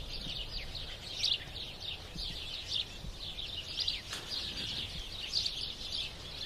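Songbirds chirping, many short high calls overlapping in a continuous chorus.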